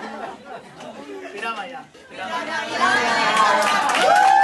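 Several people talking over one another in a group, getting louder in the second half.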